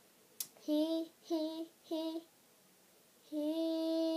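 A young girl singing unaccompanied: a click, then three short notes on the same pitch, then a long held note near the end.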